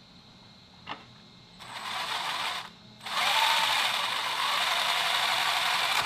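Brushless electric motor spinning the gears of a 3D-printed RC car's three-speed transmission, giving a gear whir. It runs in a short burst of about a second, stops briefly, then spins up again and runs steadily. A single click comes just before the first burst.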